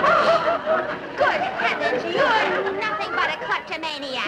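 Speech: several people talking over one another.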